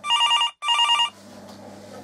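Telephone ringing: one double ring, two short bursts of a warbling electronic tone in quick succession.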